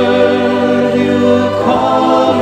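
Background music: a choir singing a Christian hymn in sustained held chords, the harmony shifting to a new chord near the end.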